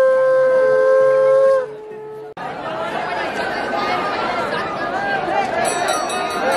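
Conch shells blown in long, steady, loud notes, two pitches overlapping, ending about two seconds in. Then crowd chatter and many voices.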